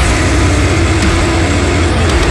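Brutal heavy metal recording: a loud, held, heavily distorted low guitar riff, with the drum hits thinning out compared with just before.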